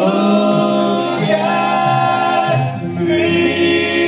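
Male vocal trio singing in three-part harmony into microphones, holding long chords.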